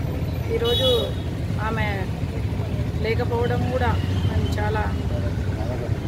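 A woman speaking in short phrases over a steady low rumble of outdoor background noise.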